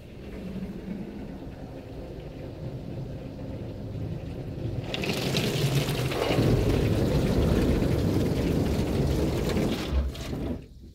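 PDQ SurfLine touchless car wash spraying water over a car, heard from inside the cabin. A low rumble at first; then, about halfway through, the spray hits the glass and body hard and turns loud, staying loud to the end.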